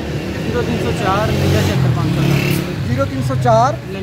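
Street traffic: a steady low engine hum of nearby vehicles, with a man's voice speaking briefly about a second in and again near the end.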